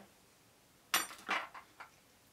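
Hard objects knocked together while being handled on a workbench: a sharp clink about a second in with a brief ringing, then two lighter knocks.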